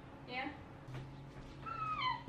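A toddler's short, high-pitched squealing call that falls in pitch, near the end.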